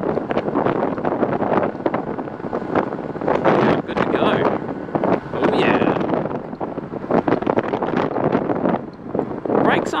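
Wind buffeting the camera microphone on a moving Honda Super Cub 110 as it pulls away from a stop, its small single-cylinder engine running under the gusting noise.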